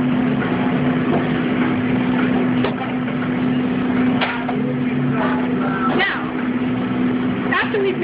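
Steady mechanical hum of restaurant kitchen equipment, a constant low drone with a noisy wash over it, with indistinct voices in the background.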